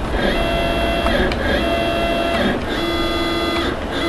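CNC mill's stepper motors whining as the X axis is jogged at slow jog speed, in three separate moves of about a second each that start and stop. Each move holds a steady high whine with several overtones.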